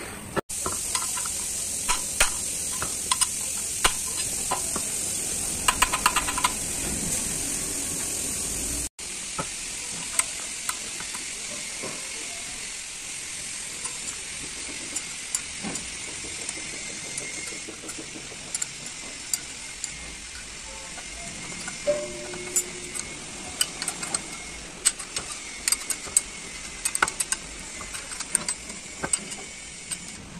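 Scattered sharp metal clinks and taps of a ring spanner working the bolts of a truck clutch pressure plate assembly on its flywheel, over a steady high-pitched hiss.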